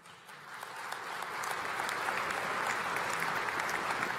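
Audience applauding: many hands clapping. It starts up and swells over the first two seconds, then holds steady.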